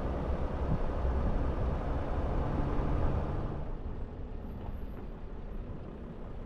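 Vehicle driving on a sandy dirt road: a steady low rumble of engine and tyres, which eases off and gets quieter a little past halfway through.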